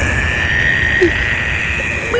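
Sudden loud dramatic sound effect: a shrill held tone over a low rumble, starting abruptly and rising slightly in pitch before cutting off at the end.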